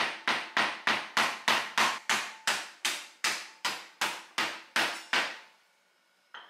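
A wooden rolling pin beating whole cucumbers on a wooden cutting board to crack them open for smashed cucumber. It lands in a steady run of blows, about three a second, and stops a little over five seconds in.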